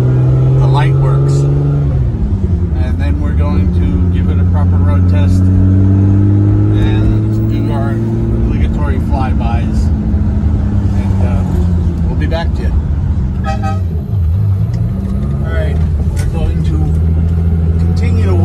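Ferrari 365 GTC/4's V12 engine pulling the car along, heard from inside the cabin. Its pitch drops at a gearchange about two seconds in, climbs slowly, dips again later and rises once more near the end.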